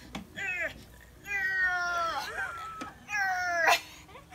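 A woman's strained, whining cries of effort as she struggles to lift a heavy lawn mower: three drawn-out vocal sounds that fall in pitch, the middle one the longest.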